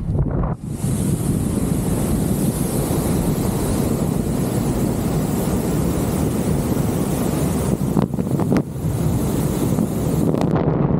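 Airflow of a miniwing paraglider flight rushing over the microphone, a steady loud wind noise that sets in about half a second in. A couple of brief snaps come near the end.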